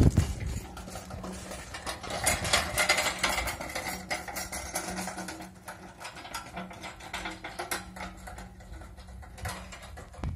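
Manual pallet jack's steel forks and small wheels rattling over cobblestone paving as it is pushed and ridden, a rapid irregular clicking that is loudest a few seconds in and then thins out.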